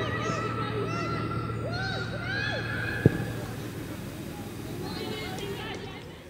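Players' voices shouting and calling to each other across a soccer pitch, several overlapping. There is one sharp thud about three seconds in.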